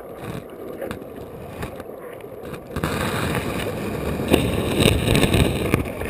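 River water rushing and gurgling around a camera held underwater, with a few sharp knocks. The sound grows clearly louder about three seconds in.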